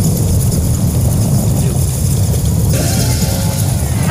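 Loud, uneven low rumble with hiss above it. About three-quarters of the way through, the hiss drops away and faint steady tones come in.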